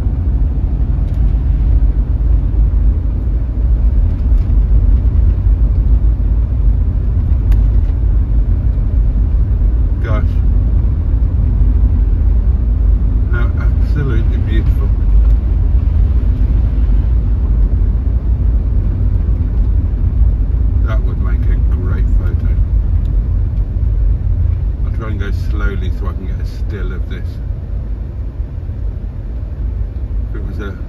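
Inside a car's cabin while driving: a steady low rumble of engine and tyres on a wet road surface.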